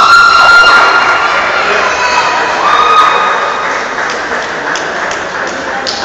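Spectators in a large hall cheering and shouting after a point. A long high-pitched yell is held for about two seconds at the start, and a second, shorter one follows about three seconds in.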